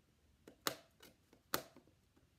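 Letter tiles clicking against a metal baking sheet as they are picked up and set down: a handful of sharp clicks, two of them louder.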